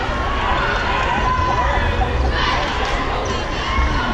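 Crowd chatter in a large gymnasium: many voices talking over one another, swelling briefly a little past halfway.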